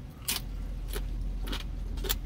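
Crisp tostada shell crunching between the teeth while being chewed, three short crackly crunches over a steady low rumble.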